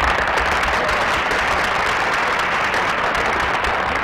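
Studio audience applauding: steady, even clapping that stops abruptly at the very end.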